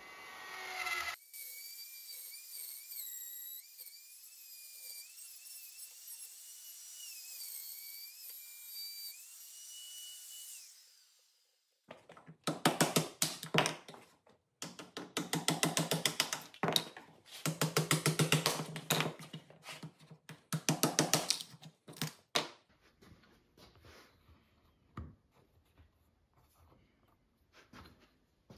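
Porter-Cable plunge router with a half-inch mortising bit and guide bushing cutting a mortise in poplar, heard sped up. Its motor gives a high whine that wavers in pitch for about ten seconds, then stops. Several bursts of rapid scraping strokes follow.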